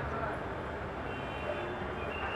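Steady low rumble of street traffic with indistinct voices in the background; a faint high tone comes in about a second in.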